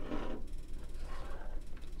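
Brief rustling handling noise as a camera battery charger is set down on a table, over a low steady hum.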